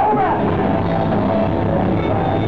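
Live blues band playing electric guitar over bass and drums, with the last sung note ending just after the start and the band carrying on instrumentally.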